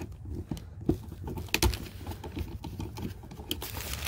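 Scattered small clicks and taps of a screwdriver working the terminal screws in an RV power distribution panel, loosening the converter's wires, with light handling rubs; the sharpest clicks come about a second in and again half a second later.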